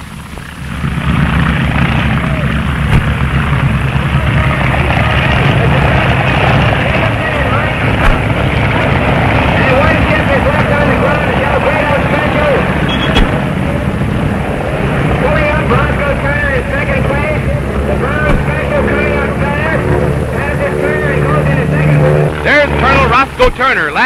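Propeller-driven racing airplanes' piston engines running at full power as the planes take off and fly low past, a loud continuous drone that swells in about a second in, with pitches that waver as planes pass. A crowd's voices are mixed in underneath.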